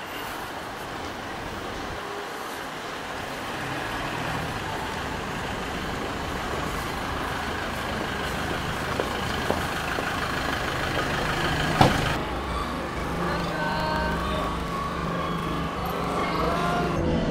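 Steady noise of a running vehicle that slowly grows louder, with one sharp knock about twelve seconds in and faint pitched tones after it.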